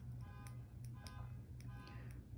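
A car alarm sounding, faint: short electronic tones repeat at an even pace, over a steady low hum.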